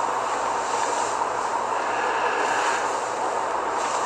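A steady hiss of background noise, even throughout, with no distinct events.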